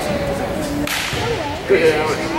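Volleyball struck by hand in a gym: a sharp slap over the echoing noise of the hall.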